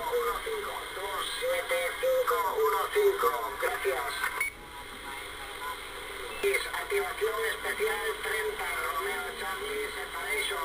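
Speech received on upper sideband through an HR2510 transceiver's speaker: thin, narrow-band voice over steady static. The signal drops out a little under halfway through and returns about two seconds later.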